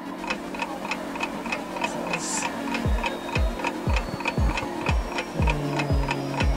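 Edited-in thinking-time music with a ticking-clock effect: quick even ticks about four a second over a steady low drone. Deep falling bass-drum hits come in about halfway through, roughly two a second.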